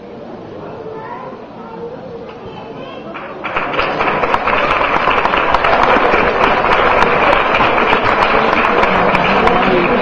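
Audience in a large hall: low crowd voices at first, then about three and a half seconds in a sudden loud burst of clapping mixed with many voices, which keeps up steadily.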